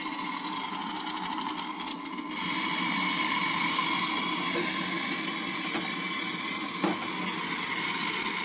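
Hot water and steam blowing out under pressure through the open steam wand of a Nuovo Simonelli Oscar espresso machine into a plastic pitcher as the boiler is drained: a steady hiss with a hum underneath that grows louder a little over two seconds in.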